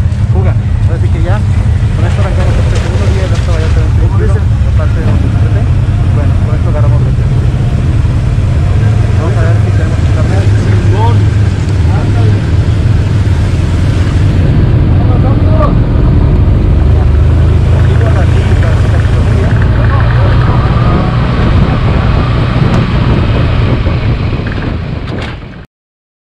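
Can-Am side-by-side UTV's engine running as it drives off, a steady low rumble, with other side-by-sides running around it and indistinct voices over it. The sound fades out near the end.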